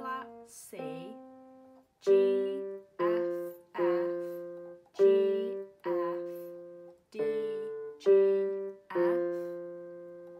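Casio Casiotone keyboard on a piano voice, playing a slow single-note melody: about nine notes, roughly one a second, each struck and left to fade.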